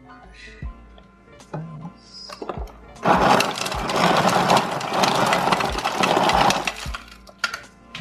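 Refrigerator door ice dispenser crushing ice and dropping it into a plastic blender cup: a loud grinding, crunching noise that starts about three seconds in and lasts nearly four seconds.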